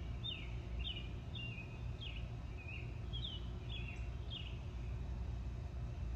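A songbird singing a run of short, falling chirps, about two a second, that stops about two-thirds of the way through, over a steady low background rumble.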